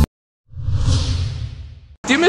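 Whoosh transition sound effect over a low rumble, starting about half a second in and fading away.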